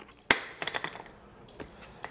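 Hands handling a hard plastic overmolded Pelican case. A sharp tap about a third of a second in is followed by a few lighter clicks, then one more soft click past the middle.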